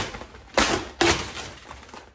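Vinyl car-wrap film crackling and snapping as it is lifted and pulled across the fender by hand: three sharp crackles about half a second apart, each fading quickly.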